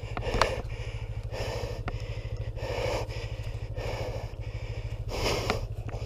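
A dirt bike's engine idling with a steady low beat, under a rider's heavy panting, about one breath a second.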